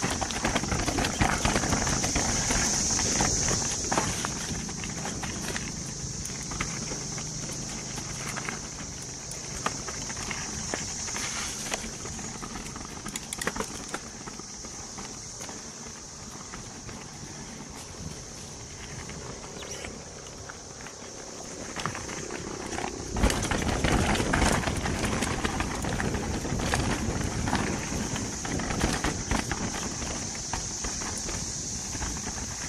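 2022 YT Capra full-suspension mountain bike descending a rocky dirt downhill trail: tyres crunching over dirt and rock with the frame and parts rattling. There is a hard hit a little past two-thirds of the way through, after which the rattling is louder.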